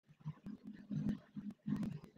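A faint, garbled person's voice breaking in and out, with a few clicks.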